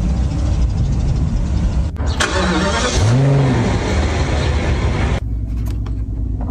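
Car engine starting, then given one rev that rises and falls in pitch about three seconds in. The louder noise drops away abruptly near the end, leaving a low rumble.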